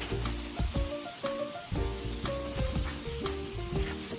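Pet dryer blowing air through its hose onto a dog's wet coat, a steady hiss, under background music with a beat and short melody notes.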